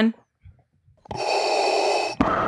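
Darth Vader's respirator breathing: after a moment of near silence, one long mechanical hissing breath starts about halfway through.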